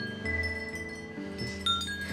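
Hanging metal angel-caller chime with a small brass bell, ringing as it is held up and swung: several overlapping ringing tones, with fresh notes struck about a quarter second in and again near the end.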